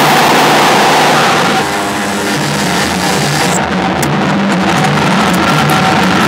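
Loud electronic noise music from the Soniperforma sonifyer instrument, which turns video motion into sound, played with a noise ensemble. A dense hiss fills the whole range, and a wavering low drone joins about a second and a half in.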